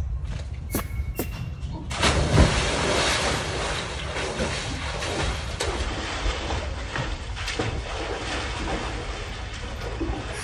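A person plunging into a swimming pool: a loud splash about two seconds in, then water splashing and churning.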